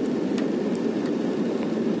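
Steady low background rumble with a few faint light clicks, as a thumbnail picks at peeling sealant over a rusted roof rivet.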